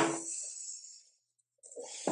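A woman's voice trailing off on a drawn-out hesitation, fading out, then a moment of dead silence.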